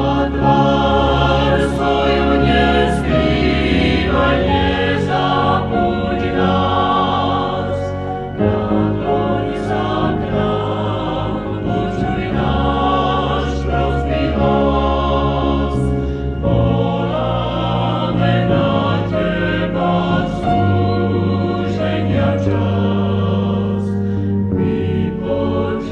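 Vocal group singing a hymn over held low bass notes, from a live cassette-tape recording.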